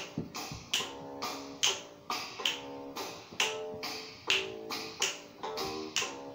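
Instrumental break of a jazz backing track: sharp finger snaps about twice a second, each with short plucked notes.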